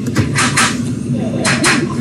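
Indistinct voices, with two short breathy hisses: one about half a second in, the other near the end.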